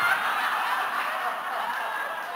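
Audience laughing together in response to a punchline, a sustained wave of laughter that slowly dies down.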